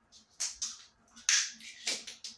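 Scissors snipping and cracking apart a plastic ping-pong ball: a few sharp snaps of breaking shell, the loudest just past the middle.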